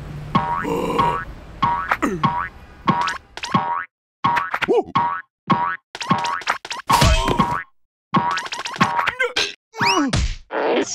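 Cartoon boing sound effects of a coiled metal spring, repeating over and over as the character bounces on it, with some sliding pitches and short pauses. Cartoon music plays underneath.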